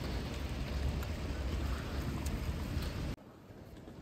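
Outdoor street ambience with wind rumbling on the phone microphone and a steady hiss, which cuts off suddenly about three seconds in to a much quieter station hush.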